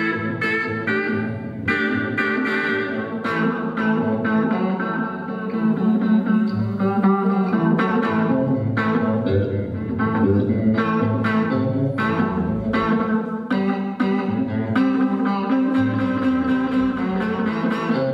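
Live blues band playing: a Telecaster-style electric guitar over drums.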